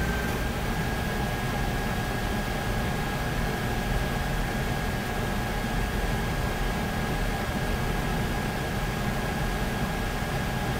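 Steady background hiss and low hum with a thin, constant high whine running through it, unchanging throughout, like a fan or air-conditioning unit in a small room.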